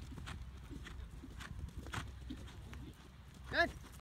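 Hoofbeats of a horse on grass turf, irregular dull thuds as it comes back from a canter toward a trot. A short call from a person's voice near the end.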